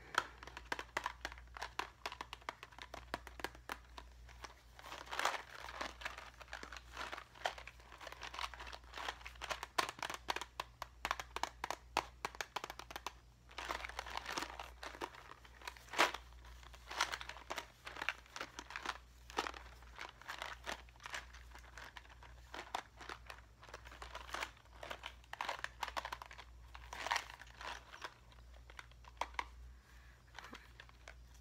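Faceted craft jewels rattling and clicking against each other and the walls of a sealed clear plastic box as it is shaken and turned by hand, in irregular bursts with several louder shakes.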